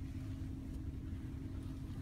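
Ford Escape SUV idling, heard from inside the cabin as a steady low hum with a faint constant tone.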